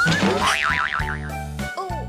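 Cartoon sound effects over bouncy children's background music: a rising whistle that breaks into a fast wobbling boing about half a second in, then a short falling slide near the end, marking the thrown ball knocking over the toy robot.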